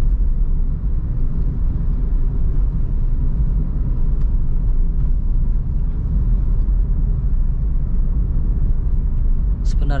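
Steady low rumble of road and engine noise inside the cabin of a Suzuki Ertiga driving along a wet road.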